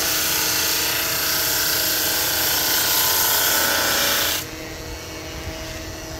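A 16-by-32 drum sander sanding a curved wooden piece as it feeds through: a loud, steady rushing hiss that drops about four and a half seconds in to the machine's quieter running hum once the piece has cleared the drum.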